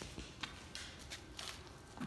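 Faint footsteps and shuffling on a concrete floor, with a few soft ticks.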